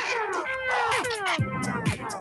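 Electronic dance music from a live DJ video remix: a kick drum about twice a second under repeated falling, wailing tones.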